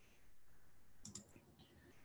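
Near silence, with a few faint computer clicks close together about a second in.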